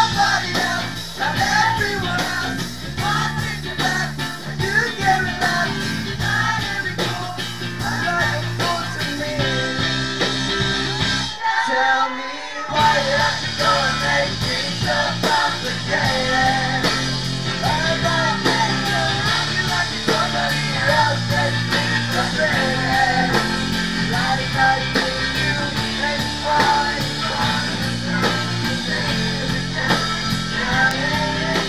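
Live rock band playing a cover song: electric guitars, drums and male vocals. The band drops out for about a second near the middle, then comes back in.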